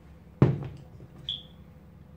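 A sneaker being handled and set down: one sharp thump about half a second in, with a lighter knock just after. A brief high-pitched chirp follows a little past the middle.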